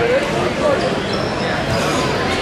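Many voices talking and calling out at once in a large hall, a steady hubbub of spectators and coaches around a grappling match, with dull thumps under it.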